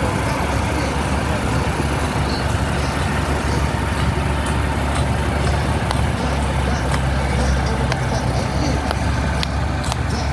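Six-wheel army cargo trucks driving slowly past one after another, a steady low engine rumble.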